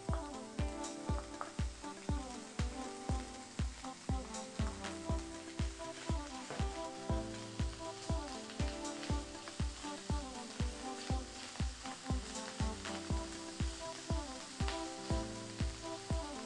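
Diced bacon sizzling as it is sautéed and stirred in a wok, under background music with a steady beat.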